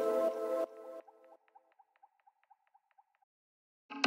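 Electronic breakbeat track ending: the music stops under a second in and gives way to a run of short, faint, high chirps, about six a second, that fade out. After a short silence, the next track starts right at the end.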